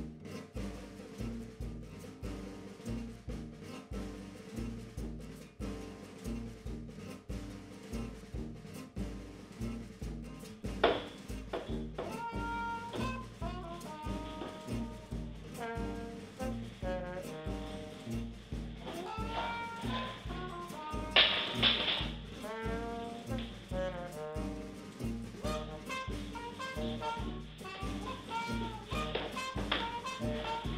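Upbeat jazz background music with a steady bass beat. A brass melody comes in about a third of the way through.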